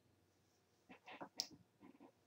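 Near silence: room tone, with a few faint short sounds from about a second in.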